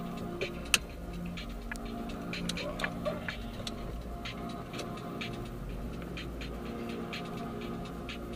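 Inside a car's cabin as it pulls away and drives: low engine and road rumble with music playing quietly underneath. There is a sharp click a little under a second in.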